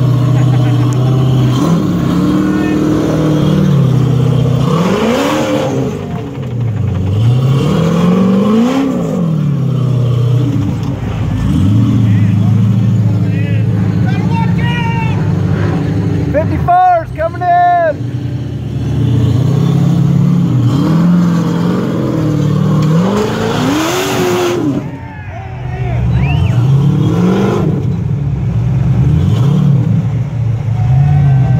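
Ultra4 rock-racing buggy engine revving hard in repeated bursts as it crawls over boulders, its pitch climbing and falling again and again. Near the middle it drops off briefly before picking up again.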